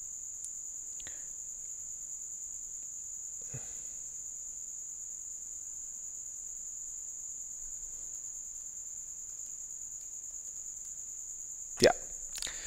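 Steady high-pitched electronic whine, constant in pitch, from the recording setup, with a faint click about three and a half seconds in and a sharper one near the end.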